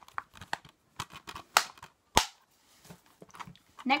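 Blue plastic Blu-ray case being handled and closed: small clicks and rustles, with two sharp plastic clicks about half a second apart in the middle.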